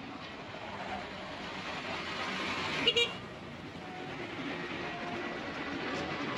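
A vehicle horn gives two very short toots in quick succession about three seconds in, over steady outdoor traffic noise.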